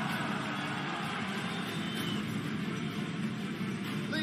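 Steady background din of a crowd in an indoor swimming-pool arena, with no distinct events.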